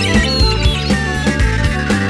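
Instrumental rock music with no singing: bass and drums keep a steady, driving beat while a high tone glides slowly downward over it.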